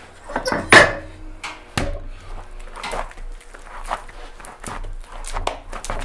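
A freshly weighed six-pound lump of throwing clay being wedged by hand on the work table: irregular thumps and slaps of the clay against the tabletop, the loudest about a second in.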